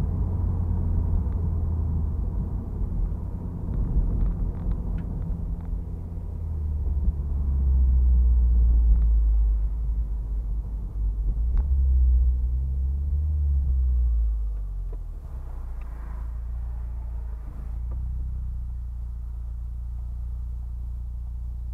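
Turbocharged Mazda MX-5 driving, heard from inside the cabin as a low engine and road rumble. It grows louder twice as the car pulls, then drops to a quieter, steady level a few seconds before the end as the car eases off.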